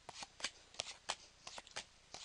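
A hand-held stack of Pokémon trading cards being thumbed through, each card slid off the stack with a short flick. The flicks come several a second at an uneven pace.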